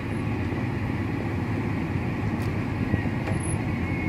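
Steady low rumble of a car driving slowly, heard from inside the car.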